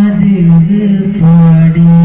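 A man singing an Islamic devotional song about Madina into a microphone, unaccompanied, drawing out long held notes with small turns between them.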